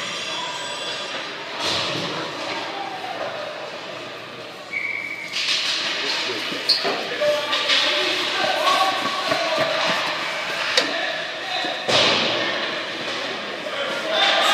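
Youth ice hockey play: sharp knocks of sticks and puck against the ice and boards, several times. Spectators are talking and calling out, growing louder about five seconds in.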